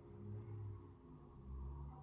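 Acoustic guitar's last chord dying away, faint. Two short low rumbles sound under it, about half a second in and again near the end.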